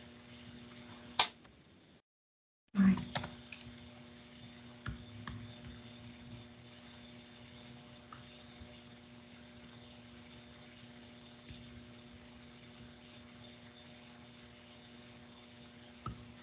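Computer keyboard and mouse clicks: one sharp click about a second in, a quick cluster of clicks near three seconds, then a few fainter ones, over a steady low hum. The sound cuts out completely for under a second around two seconds in.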